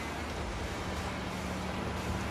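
Steady rush of swift river water around a drifting boat, with wind rumbling on the microphone and a faint steady hum joining about a second in.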